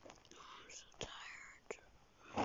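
A girl whispering softly and breathily close to the microphone, with two small clicks, one about a second in and one shortly after.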